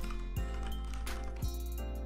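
Background music of a livestream with steady bass notes and soft beats about a second apart.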